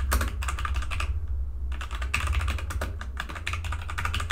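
Typing on a computer keyboard: quick runs of keystrokes with a short pause a little over a second in, over a steady low hum.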